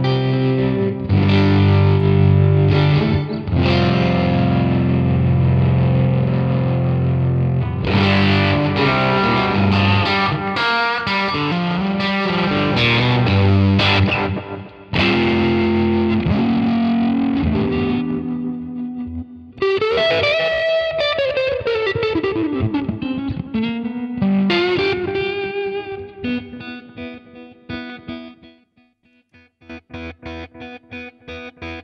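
Electric guitar played through an amp and the Universal Audio OX amp top box, with chords and note runs. About two-thirds of the way through, a note slides down in pitch over a couple of seconds. Near the end the playing thins to quieter, sparser notes.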